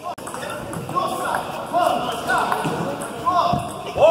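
Voices talking in a large echoing sports hall, with a few knocks of a table tennis ball bouncing between points.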